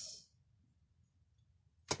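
Near silence: a pause in a woman's speech, with the hiss of her last word fading out at the start and her voice starting again abruptly just before the end.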